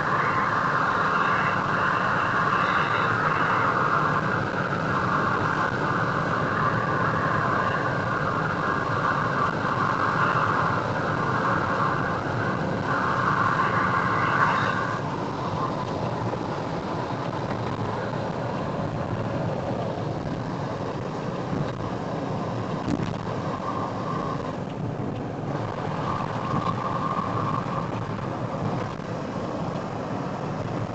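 Steady engine and road noise heard from inside a moving car, a little louder in the first half.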